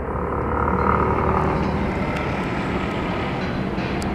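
Steady outdoor city noise: a low, even rumble, with a faint hum over the first two seconds.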